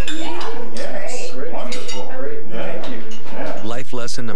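Cutlery clinking and scraping on china dinner plates as several people eat, a steady run of small metallic clicks.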